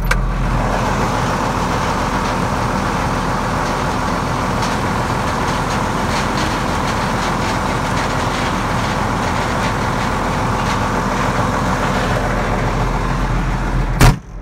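Farm tractor's diesel engine running steadily close by, a constant engine hum under a dense machine noise, with combines working in the same field.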